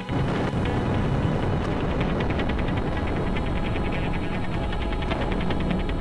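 Explosion sound effect for a nuclear blast: a sudden bang, then a long, steady rumble, with a music track underneath.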